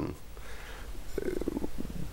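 A man's faint breath, then, about a second in, a short low creaky vocal hesitation sound (vocal fry) in a pause in his speech.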